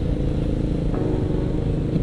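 Sport motorcycle engine running steadily at low speed in traffic, an even hum with no revving or change in pitch, over low road rumble.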